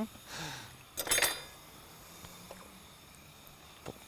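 A spoon clinking and scraping against a frying pan in a short burst about a second in, with quieter utensil-on-pan stirring before it.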